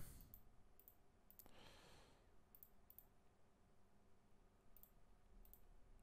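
Near silence with a few faint, sparse computer mouse clicks, and a soft breath about one and a half seconds in.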